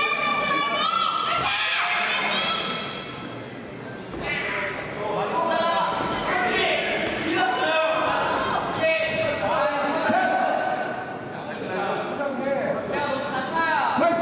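Men's voices shouting across an echoing hall, with thuds of wushu sanda kicks and punches landing on padded protective gear.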